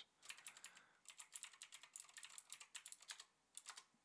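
Faint typing on a computer keyboard: a quick run of key clicks with a couple of short pauses.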